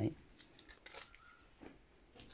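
One short spoken word, then three faint, sharp clicks spread about half a second apart over low room tone.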